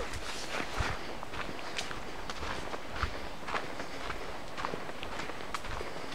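Footsteps walking through forest undergrowth and leaf litter, about two crunching steps a second, with rustling of plants underfoot.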